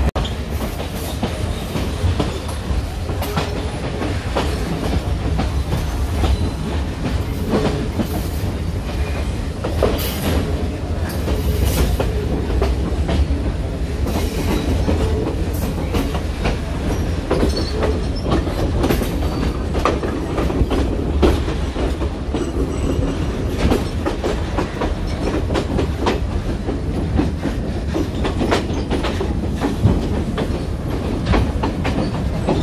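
Passenger train running along the line, heard from on board: a steady low rumble with many clattering wheel clicks over the rail joints and points.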